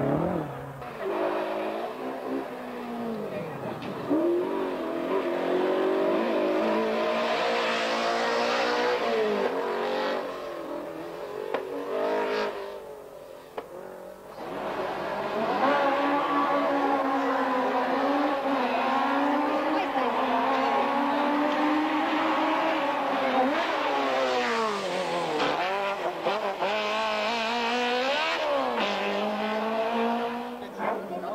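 Race car engines revving hard through a cone slalom, the pitch climbing and falling with gear changes and lifts off the throttle. The sound drops away about 13 seconds in, then a second car comes in louder.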